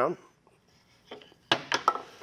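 A few short, sharp wooden clicks and knocks about one and a half seconds in, as a piece of wood stock is handled and set against the fence on a table saw that is not running.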